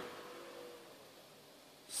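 Faint room tone in a pause between words, fading quieter over the first second or so, with a man starting to speak again at the very end.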